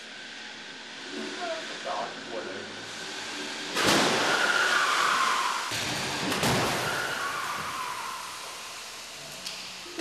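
Car crash test: the test car is pulled down the track with a rushing, whining noise, then hits a deformable barrier with a loud crash about halfway through. The noise dies away slowly afterwards.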